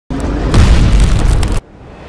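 A cinematic boom sound effect for an animated intro: a loud, deep, noisy rumble that starts suddenly, holds, and cuts off abruptly about a second and a half in, followed by a faint rising sound.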